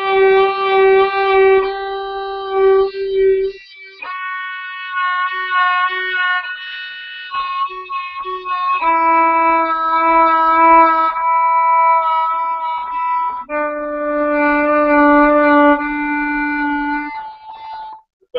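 A violin bowed in a slow phrase of long sustained notes. The vibrato is held back until partway into each note rather than starting at once.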